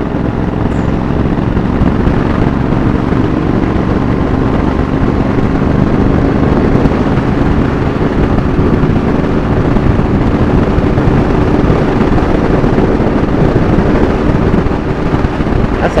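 Motorcycle engine running steadily under way, mixed with heavy wind rush on a helmet-mounted microphone.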